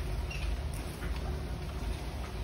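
Faint scratching and small ticks of a small speaker's bare wire leads being rubbed against a battery's terminals to test the speaker, which stays all but silent, over a low steady hum.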